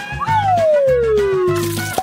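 A comic sound effect of a single long falling whistle that slides smoothly down in pitch for about a second and a half, over background music with a steady beat.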